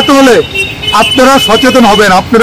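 Only speech: a man speaking Bengali, with a brief pause about half a second in.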